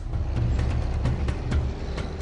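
Steady low rumble of a road vehicle, with background music.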